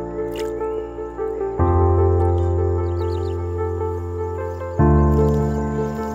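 Background music: slow, sustained chords that change about every three seconds.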